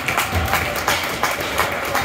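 Scattered claps from spectators in an ice rink, irregular sharp strikes a few times a second over the rink's crowd noise.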